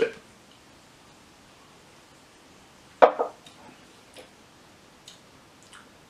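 Quiet room with one short, sharp knock about three seconds in, a tasting glass set down on a wooden barrel head, followed by a few faint clicks.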